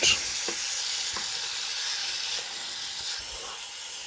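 Chicken pieces sizzling steadily in a somewhat overcrowded frying pan, with a couple of faint ticks in the first second or so.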